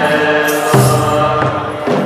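Eritrean Orthodox mezmur, a chanted spiritual hymn over held tones, with a drum beat about three-quarters of a second in and a lighter one shortly after.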